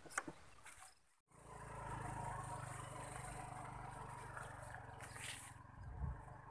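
Motor scooter's small engine running steadily after a brief dropout about a second in, slowly fading as the scooter rides away. A short hiss comes near the end.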